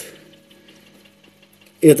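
Faint steady hum with a little water noise from the aquarium's aeration: an air pump running and air bubbling into the tank.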